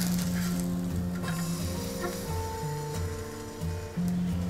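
Background music of slow, held notes, with faint sizzling from bread toasting in butter on a hot tawa.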